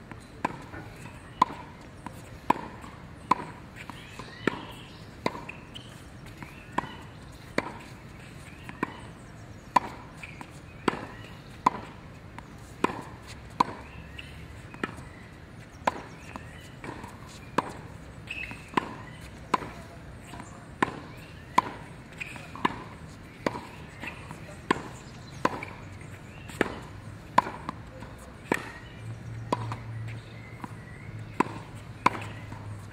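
Tennis balls struck on racket strings in a volley rally at the net: a sharp pock about once a second, kept up without a break.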